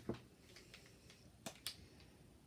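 A few faint sharp clicks, one at the start and two close together about one and a half seconds in, from a plastic Posca paint marker being handled.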